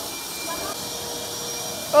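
Water spraying hard out of a sink's plumbing, a steady rushing hiss, with a wet vacuum's motor running under it in a steady whine.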